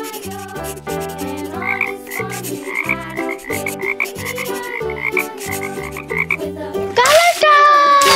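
Bouncy children's background music with a cartoon frog-croak sound repeated about three times a second through the middle. About seven seconds in, a sudden loud burst with falling tones cuts in as a transition effect.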